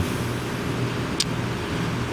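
Steady running hum of an air conditioner that has just come on, with a single short high click about a second in.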